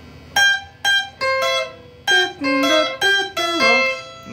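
Clean electric guitar picking a single-note Kamba benga solo line: about nine plucked notes, each ringing briefly, with one sliding down in pitch near the end.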